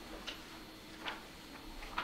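Faint clicks and a brief rub from a podium gooseneck microphone being handled and adjusted, three small ticks spread across the moment, the last the sharpest.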